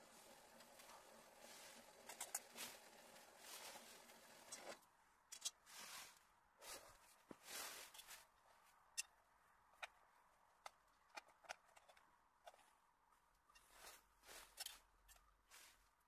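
Faint, irregular clicks and scrapes of a metal knife and fork against a plate as a sausage and bread are cut, over a soft steady hiss that fades out after about five seconds.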